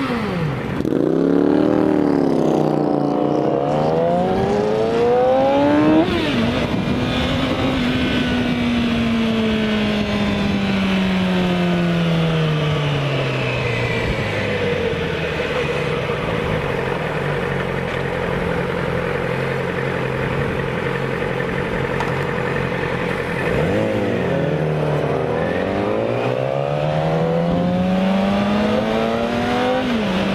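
Motorcycle engine pulling away through the gears: the pitch climbs, drops sharply at a shift about six seconds in and climbs again, then falls slowly as it decelerates. It runs low and steady for several seconds and rises again near the end as it accelerates, with wind noise throughout.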